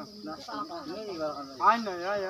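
A person's voice sliding up and down in pitch in long, sung-like sweeps, loudest near the end, over a steady high hiss.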